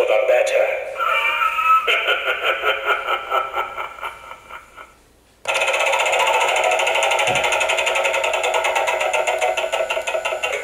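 Gemmy Animated Mystic Wheel prop playing through its small built-in speaker: a voice line at the start, then a rhythmic ticking that fades out, a brief gap about five seconds in, and then a steady electronic sound effect with a fast pulse starts suddenly.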